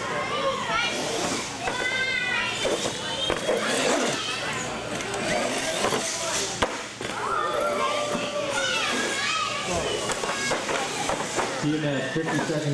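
Crowd of spectators, many of them children, chattering and calling out in a large hall, with one sharp knock about six and a half seconds in.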